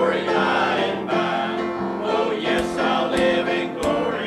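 Small mixed choir of men's and women's voices singing a hymn together, with a few brief sharp knocks in the second half.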